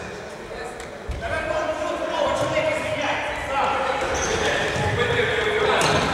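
Futsal ball being kicked and bouncing on the hard floor of a sports hall, with players shouting; it all echoes in the large hall.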